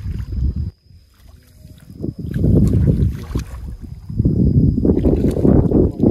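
Wind buffeting the microphone in an open rice field: a gusty low rumble that drops away about a second in and comes back strongly about two seconds later.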